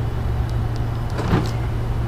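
A steady low hum, with a few faint light clicks and one soft knock just past the middle.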